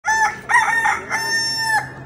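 A rooster crowing once, loud: two short notes and then a long held note that breaks off near the end.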